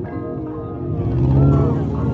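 A car engine running with a steady low note, under the voices of a crowd standing around the car.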